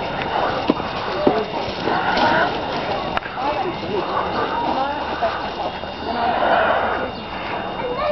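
Indistinct overlapping voices, with children among them, calling and chattering on and off, with a few sharp clicks in the first few seconds.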